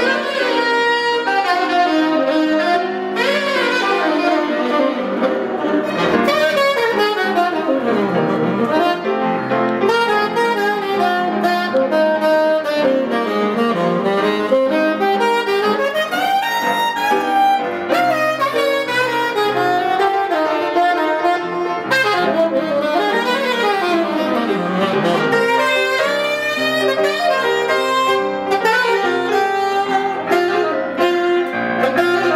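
Saxophone and piano jazz duo playing live, the saxophone leading with quick runs up and down over the piano.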